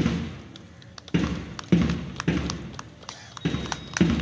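Heavy thuds beating out marching time while a contingent marches past in step: six beats, one a little more than every half second, each dying away quickly.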